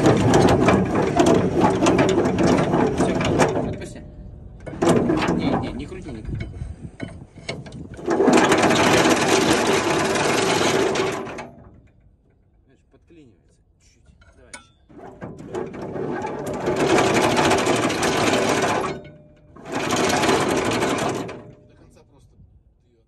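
Anchor chain rattling out over a deck windlass's chain wheel in four bursts of a few seconds each. It stops between bursts as the windlass brake is tightened with a lever bar and loosened again to let out more chain.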